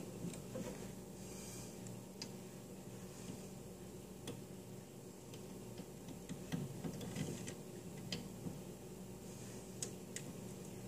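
Faint, scattered small clicks and light handling noise as hands work a three-pin fan cable connector onto a motherboard's CPU fan header inside an open PC case, over a steady low hum.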